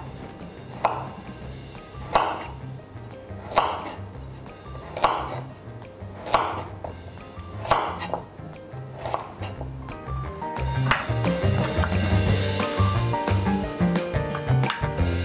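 Chef's knife cutting through a raw carrot into a wooden cutting board: eight sharp cuts, about one every second and a half, over background music that grows louder near the end.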